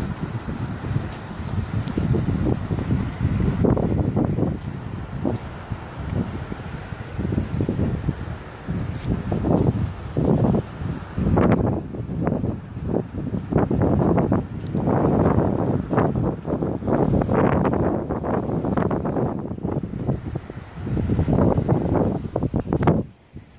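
Wind buffeting a mobile phone's microphone in uneven gusts, a low rumbling noise that swells and drops.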